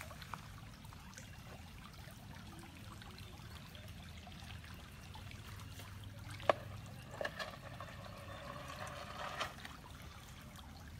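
Small woodland creek trickling steadily, with a single sharp click about six and a half seconds in.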